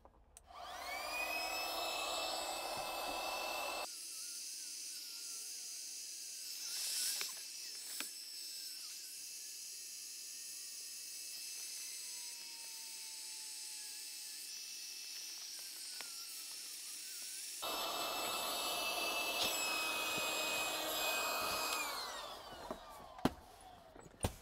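Electric air pump inflating an air mattress: it spins up with a rising whine just after the start, runs steadily, then winds down with a falling pitch near the end as the mattress is full.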